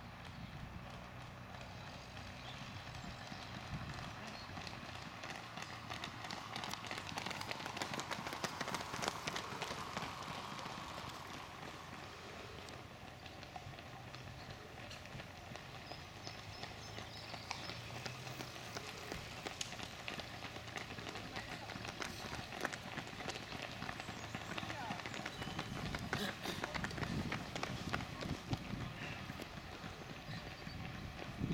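Footsteps of marathon runners, many running shoes slapping the road in a quick uneven patter, with voices in the background.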